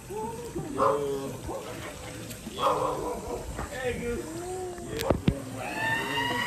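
Indistinct, high-pitched voices of people playing in a swimming pool, a young child's among them. Two sharp clicks come about five seconds in.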